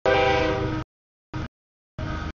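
Freight locomotive air horn sounding one loud chord blast of under a second, cutting off sharply. A brief burst of train noise follows about a second and a half in.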